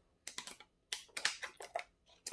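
A person drinking from a thin plastic water bottle: a run of faint, irregular clicks and crackles from the plastic as it is gripped and tipped.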